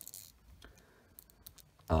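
A few faint, sparse clicks of hard plastic as a 1/18-scale Acid Rain World action figure is handled and its head joint is moved.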